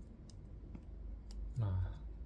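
A few light clicks from a small ring-style phone holder as its ring and rotating base are turned and flexed by hand.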